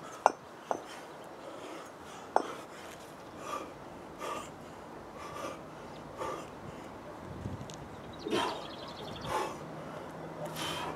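A man breathing hard in short, rhythmic exhalations about once a second while lifting two 24 kg kettlebells. Near the start come three sharp clinks as the cast-iron kettlebells knock together.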